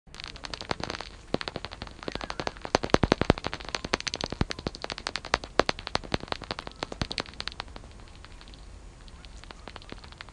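Bat echolocation calls heard through a bat detector: quick, irregular clicks and wet smacks. The clicks come in fast runs, densest and loudest about three seconds in, and thin out after about eight seconds.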